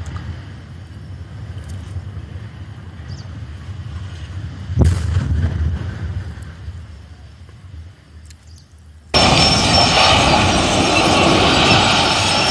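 Demolition of a tall industrial chimney: a low rumble, then a single deep boom about five seconds in as it hits the ground, fading away. About nine seconds in, a loud, continuous rumbling noise cuts in suddenly as a second large concrete structure collapses.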